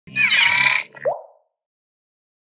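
Animated logo sound effect: a bright cluster of falling tones lasting under a second, then a short rising bloop about a second in.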